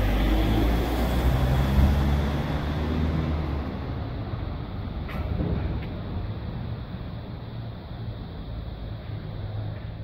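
Low rumble of street traffic on a city street, loudest in the first few seconds, then fainter and duller.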